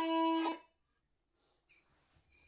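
Uilleann pipes holding the final notes of a piece, cutting off suddenly about half a second in, followed by near silence.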